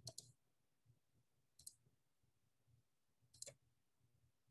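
Three faint computer-mouse clicks, about one and a half seconds apart, as a number is keyed in on an on-screen keypad; otherwise near silence.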